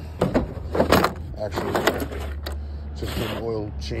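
Cardboard box being handled and set down on a ribbed plastic truck-bed liner: a string of scrapes and knocks over the first two seconds or so, then a steady low hum underneath.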